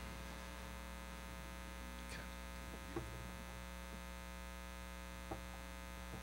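Steady electrical mains hum through the stage sound system. A few faint, short clicks come about two, three and five seconds in while an acoustic guitar is being retuned.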